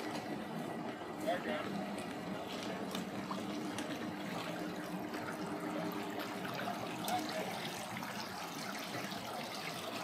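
Water lapping and trickling around an aluminium boat hull as it floats off its trailer, over a low steady engine hum that fades out about seven seconds in.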